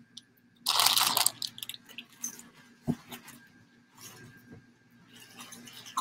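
Clear plastic mushroom grow bag crinkling as it is handled, loudest about a second in, followed by a single dull knock about three seconds in and faint rustling.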